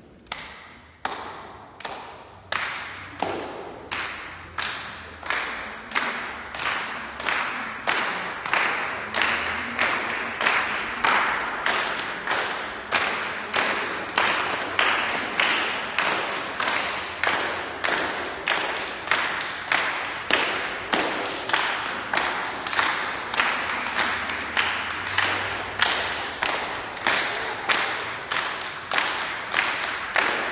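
A group of people clapping their hands in unison, a steady beat of about two claps a second. It starts with a few sparse claps and grows louder over the first few seconds.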